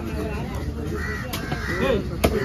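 Crows cawing, two harsh calls in the second half, over people talking in the background, with one sharp knock in the middle.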